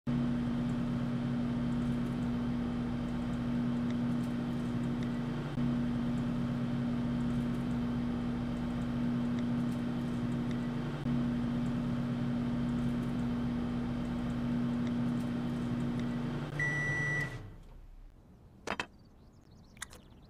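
Microwave oven running with a steady low hum while heating food. Near the end it beeps once and the hum stops, followed by a single sharp click.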